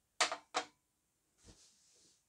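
Two sharp clicks in quick succession, then a soft low knock about a second and a half in as a glass is set down on a table.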